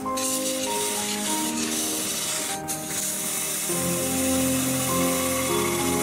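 Background music of slow, held notes over a steady hiss from a turning gouge cutting a spinning resin blank on a wood lathe. The hiss breaks off briefly about halfway through.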